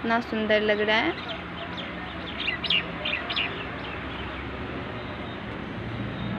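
Birds calling: a drawn-out call with a clear pitch lasting under a second at the start, then a few short high chirps of small birds about halfway through, over steady background noise.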